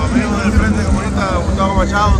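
A man speaking close to the microphone over a steady low rumble.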